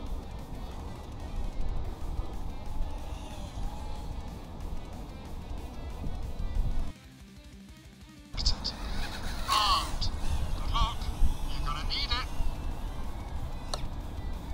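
Background music bed over outdoor noise, cutting out briefly about seven seconds in and then returning, with a few short high calls soon after it returns.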